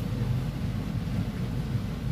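Low, steady background rumble with no speech, the kind of room or line noise that fills a pause in a talk.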